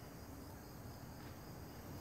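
Faint, steady background of crickets chirping.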